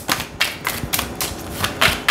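A deck of oracle cards being shuffled by hand: a quick, irregular run of card clicks and snaps, with a louder snap near the end.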